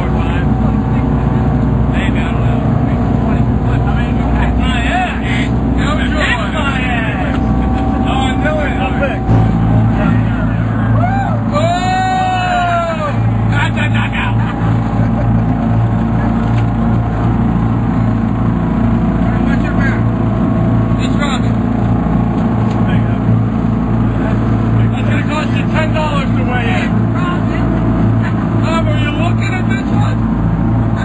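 A boat's engine running steadily while under way, a constant low hum under background voices; the engine note changes about nine seconds in.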